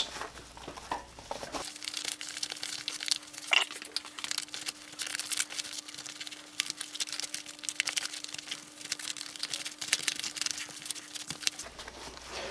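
Handling noise of a hard plastic taser platform mount being pressed and slid into nylon MOLLE webbing on a vest carrier, with a metal butter knife prying under the webbing: a continuous run of small clicks, scrapes and crinkling fabric. A faint steady hum sits underneath for most of it.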